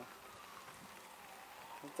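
A faint, distant siren wailing, its pitch slowly falling and then starting to rise again, over a low outdoor hiss.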